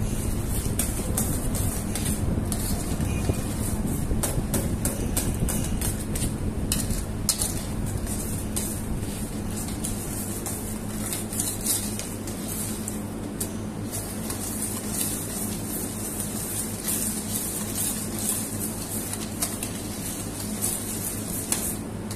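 A metal whisk stirring tartar sauce in a stainless steel bowl, with many irregular clicks and scrapes of metal on metal, over a steady low hum.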